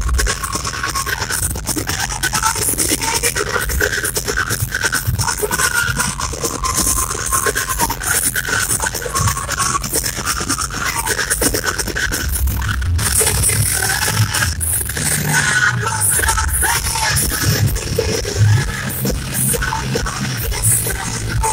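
A metal band playing live through a concert PA system, heard from the audience: loud, continuous, with guitars, drums and vocals together.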